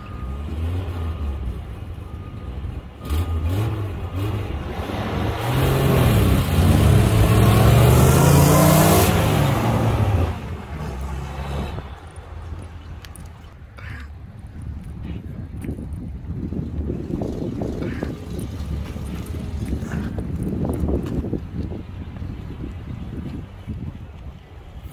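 Two 1948 Davis Divan three-wheelers accelerating hard from a standing start, their engine notes climbing as they rev up. The sound is loudest about six to ten seconds in, then drops away quickly as the cars pull off into the distance.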